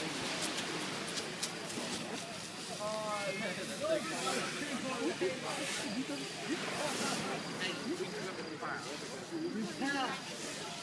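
Indistinct chatter of onlookers over a steady hiss of fire hoses spraying water onto a burning fishing boat.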